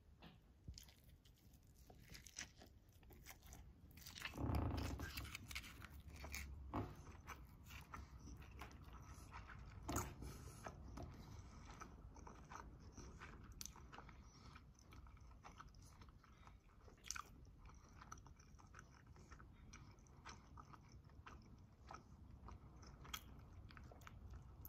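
Quiet close-up chewing of a rice ball wrapped in nori seaweed: soft mouth clicks and small crunches, scattered irregularly, with one louder brief sound about four and a half seconds in.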